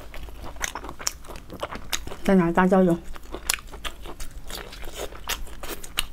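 Close-miked mouth sounds of someone eating soft braised meat: quick wet chewing and lip-smacking clicks throughout, with a short hummed 'mm' in two or three pulses about two seconds in.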